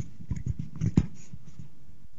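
Handling noise from a handheld microphone as it is passed between people: a few soft, irregular knocks and rubs, clustered in the first second.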